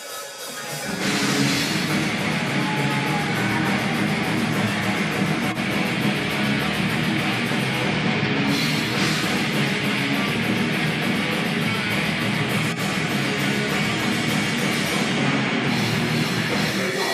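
Heavy metal band playing live: distorted guitars, bass and drum kit. The song starts loud about a second in and runs on without a break.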